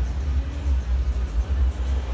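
Low, steady rumble of a car driving, heard from inside the cabin.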